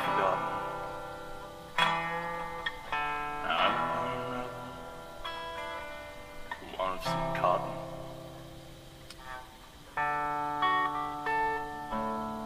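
Acoustic guitar strummed in slow, separate chords, each one struck and left to ring and fade. There is a long fading chord between about seven and ten seconds in, then new chords are struck near the end.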